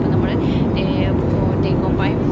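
Steady, loud roar of a jet airliner's cabin in flight: engine and airflow noise heard from a window seat.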